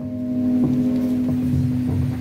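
A single musical note held steady, with fainter low instrumental sounds beneath it.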